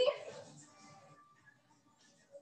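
A woman's brief vocal sound right at the start, trailing off in the room's echo, followed by faint room noise.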